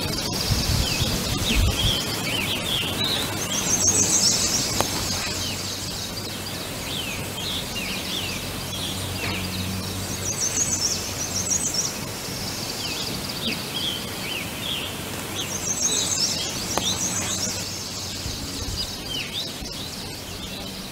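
Woodland birds: a high trilled song repeated about every six seconds, with scattered short chirps between.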